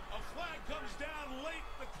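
Play-by-play commentary from an NFL television broadcast: a male announcer's voice, quieter than the voice just before it.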